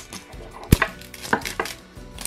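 Plastic wrapping of a Pikmi Pops toy being picked and peeled open at its pull-tab tear strip, making a few sharp crackles and clicks of plastic film.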